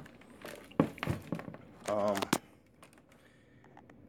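Handling noise from a plastic cordless string trimmer being moved against cardboard: a sharp knock at the start, then a quick run of short knocks and crinkles, and a few faint ticks later.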